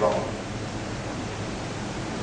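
A pause in a man's sermon: the tail of his last word right at the start, then a steady hiss of background noise with no other events.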